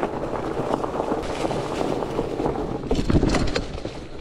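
Fat-tyre mountain bike coasting over a dirt trail covered in dry leaves: steady tyre and leaf noise with the bike rattling. There is a louder clattering jolt about three seconds in, and the noise eases off near the end as the bike slows on grass.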